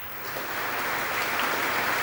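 Audience applauding. The clapping builds over the first half second and then holds steady.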